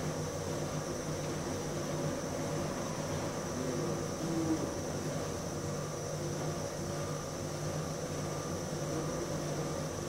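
Steady mechanical hum with a hiss, like a fan or ventilation running, with a brief higher note about four and a half seconds in.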